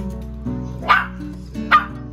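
Small dog barking twice, two short sharp barks a little under a second apart, begging for food from a plate held above it.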